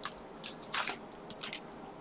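Foil wrapper of a Pokémon trading card pack crinkling and tearing as it is pulled open by hand, a few short crisp rustles.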